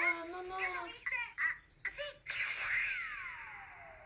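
A brief high, laughter-like voice, then a few short voice sounds. Past halfway comes a long cartoon-style falling whistle over a rushing hiss, sliding steadily down in pitch and fading away.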